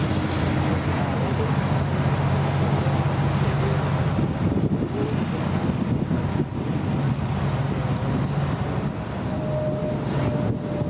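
Steady drone of a large engine running, over the constant rushing hiss of a fire hose stream spraying water onto a burnt semi trailer, with wind on the microphone.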